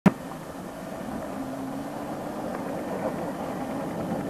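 A motor vehicle's engine running steadily, with a sharp click at the very start.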